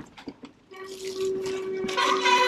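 Mountain bike rolling downhill on a dirt trail, with a steady mechanical whine that sets in less than a second in; a second, higher whine joins near the end.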